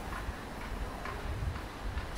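Outdoor city-street ambience: a steady background hum with soft low thumps and faint light ticks about once a second.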